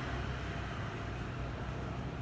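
Steady low hum with an even faint hiss of background noise, with no distinct event.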